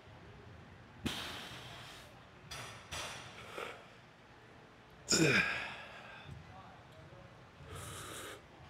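A man breathing hard through a set of cable tricep extensions: sharp exhales and breaths in, several seconds apart. About five seconds in comes the loudest one, a voiced grunt that falls in pitch.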